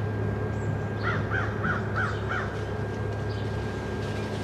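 A crow cawing five times in quick succession about a second in, over a steady low hum.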